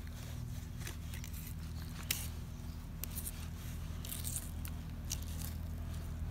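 Fillet knife cutting down the side of a rock bass through its tough scaled skin and flesh, with scattered crunching clicks as the blade works through. The sharpest click comes about two seconds in.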